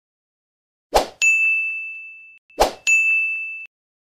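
Two end-screen sound effects for a subscribe-button animation. Each is a short rush followed by a bright, bell-like ding that rings and fades over about a second. The first comes about a second in and the second about a second and a half later.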